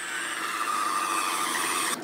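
Skinzit electric fish skinner running, a steady motor whine as its rollers draw the skin off a walleye fillet.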